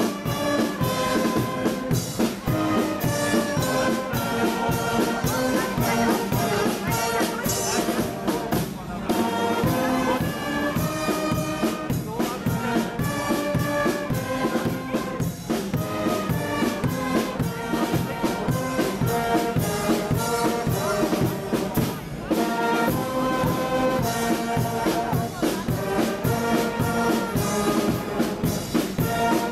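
A carnival guard's brass band playing a march: trumpets, trombones and a sousaphone over a bass drum keeping a steady beat.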